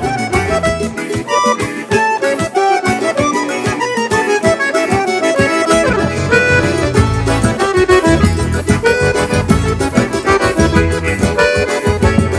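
Instrumental forró music: an accordion plays the melody over a steady beat, with the bass coming in about halfway through.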